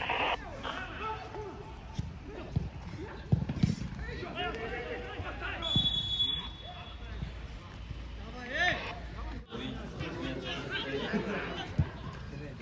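Football being played: players and coaches shouting across the pitch, with a few sharp thuds of the ball being kicked, the loudest near the end. A brief high steady whistle tone sounds about six seconds in.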